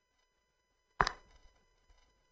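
A single sharp click or knock about a second in, dying away quickly, in an otherwise quiet pause.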